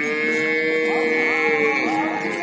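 Cattle mooing: one long drawn-out call lasting nearly two seconds.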